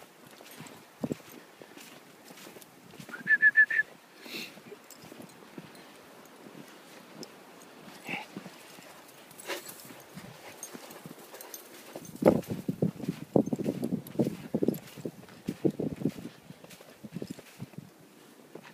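Footsteps crunching in snow: scattered soft crunches, then a fast, dense run of steps over several seconds in the second half. About three seconds in there is a brief high-pitched pulsing call.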